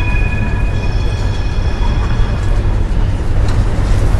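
A loud, steady low rumble with a high, whistle-like tone held over it that fades out about three seconds in.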